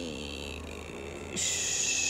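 A bird in the garden gives two high, buzzy calls, the second louder, each lasting about a second. A brief low human murmur comes at the start.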